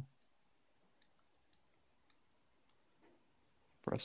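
Faint, sharp clicks of computer input, roughly one every half second, as the photo on screen is moved along.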